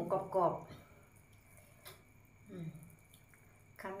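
A woman's voice speaking briefly, then a quiet stretch broken by one faint click and a short murmur, before she speaks again.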